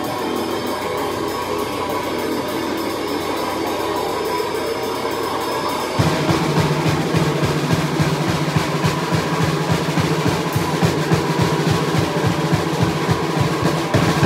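A live heavy band plays with fast drumming. About six seconds in, it comes in louder and heavier, with a thick low end from the bass and guitars under rapid drum strokes.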